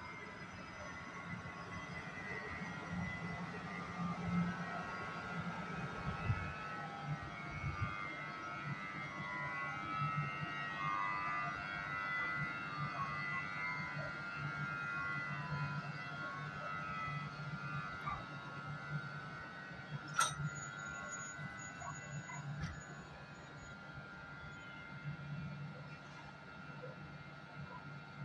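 Medway electric locomotive moving slowly through the station, giving a steady whine of several held tones over a low hum. A single sharp click comes about twenty seconds in.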